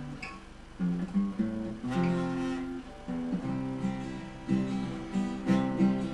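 Acoustic guitar strumming chords in the instrumental lead-in to a song, quieter for the first second and then with a fresh strum every half second or so.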